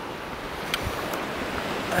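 Steady rush of wind on the microphone mixed with surf washing on a beach, with a short click about three-quarters of a second in.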